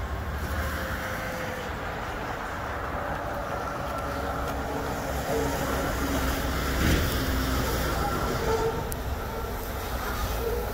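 Freight train cars rolling on the rails as the train moves away, a steady rumble with faint thin squealing tones from the wheels. A brief louder clunk comes about seven seconds in.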